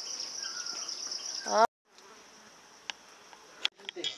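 A steady, high-pitched chorus of insects chirring, which cuts off suddenly after about a second and a half. A much fainter chorus follows, broken by a couple of light clicks.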